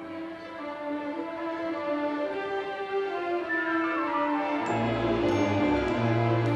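Orchestral background music led by strings: a slow melody, then a descending run of notes about three and a half seconds in, and a low bass note that comes in near the end.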